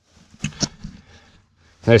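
Two light clicks about half a second in, then faint rustling, with a man's voice starting near the end.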